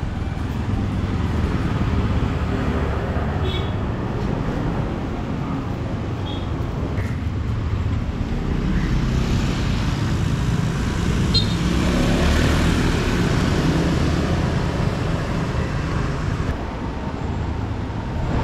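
Street traffic of small motor scooters running past at close range. It grows louder for a few seconds past the middle as several ride by.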